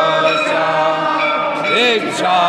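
Group of devotees chanting an aarti hymn together, many voices held on long notes with a rising-and-falling slide near the end.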